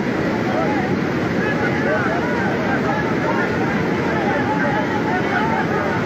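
Floodwater rushing through a swollen river, a steady loud rush of water, with distant voices calling out indistinctly over it.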